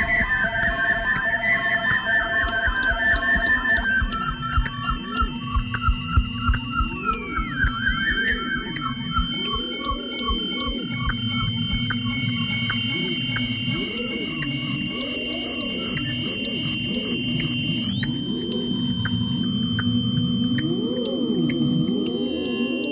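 Electronic music made from audio feedback howl (the Larsen effect) and its modulations: rapid pulsing tones in the first few seconds, then high sustained whistling tones that slide down about seven seconds in and jump up again near the end. Under them runs a low steady drone with repeated swooping rises and falls in pitch.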